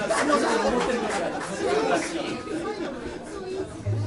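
Several people talking at once, an indistinct chatter of voices in a room, with no music playing.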